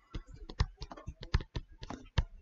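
Quick, irregular clicking taps of a stylus writing on a tablet screen, about a dozen in all, fairly quiet.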